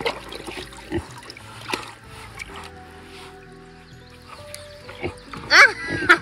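Background music with held tones, over a pig slurping and splashing with its snout in a tub of water, a few sharp wet clicks in the first two seconds. A brief voice cuts in near the end.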